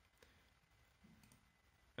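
Near silence: room tone, with one faint computer mouse click about a quarter second in.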